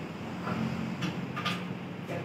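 Steady low mechanical hum under a faint hiss, with two light clicks about a second and a second and a half in.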